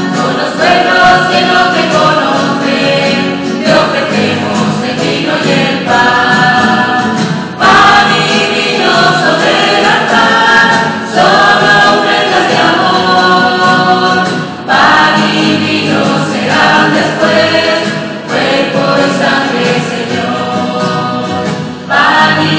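Small mixed choir of men and women singing a Spanish hymn in phrases, accompanied by strummed acoustic guitar.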